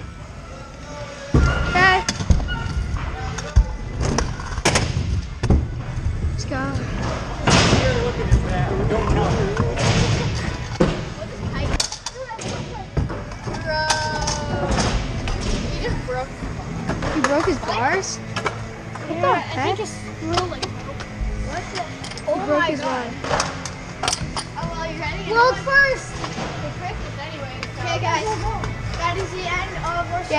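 Kick scooter wheels rolling over the wooden ramps of an indoor skatepark, with repeated thuds and clatters of landings and impacts, several of them loud, over children's voices and music in the hall.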